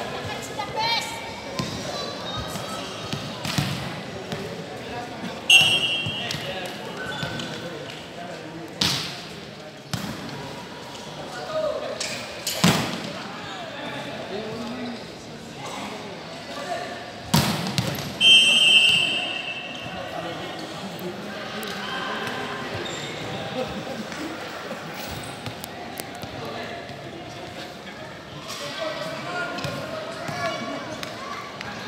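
Indoor volleyball play in a large echoing hall: a referee's whistle blows twice, about five seconds in and again near eighteen seconds, and in between the ball is struck with a few sharp smacks. A bed of players' and spectators' voices runs underneath.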